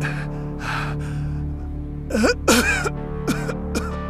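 A man's heavy, laboured breathing and strained groans and gasps, over a sustained low dramatic music score. The loudest groans, wavering in pitch, come just past halfway, followed by two short gasps near the end: the breaths of a man dying from a poison injection.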